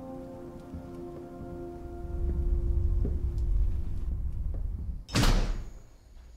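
Horror film score: a held drone of several steady tones, joined about two seconds in by a deep rumble that swells. About five seconds in, a single loud hit sounds as the film cuts to a new scene.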